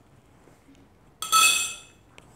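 A metal pipe clinks once against a hard surface about a second in and rings briefly with a bright, high ring that dies away within about a second.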